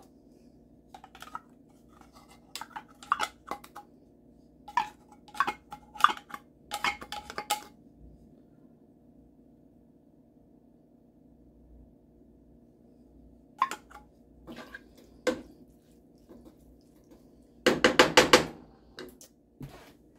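Wooden spatula scraping and knocking in a nonstick frying pan as canned diced green chilies are stirred into browned ground beef, in scattered short bursts with a lull in the middle. The loudest clatter comes near the end.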